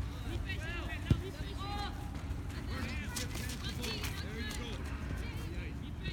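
Voices of players and spectators calling out across an outdoor soccer field over a steady low rumble, with a single sharp thump about a second in.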